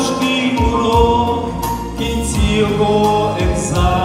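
Live Christian gospel music: a male vocal group singing held notes in harmony through a PA over instrumental accompaniment with a steady low beat.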